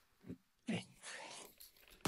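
A man's hard breathing after exertion: two short voiced exhales, each falling in pitch, then a soft rustle.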